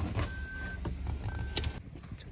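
Inside a Suzuki car's cabin: a low engine rumble with scattered clicks, and two electronic beeps from the car about a second apart, as it comes to rest after reverse parking. The sound falls away abruptly near the end.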